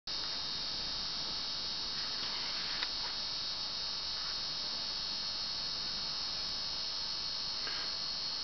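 Steady electronic hiss and hum, strongest in the upper range, with a faint click about three seconds in.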